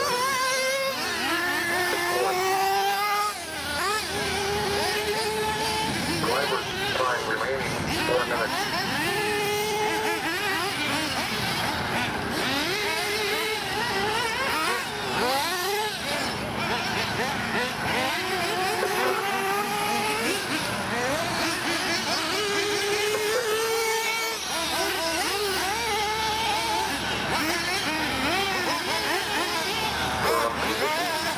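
High-revving .21 nitro engines of several 1/8-scale RC buggies racing. Their high-pitched whines overlap and keep rising and falling as the cars accelerate and back off around the track.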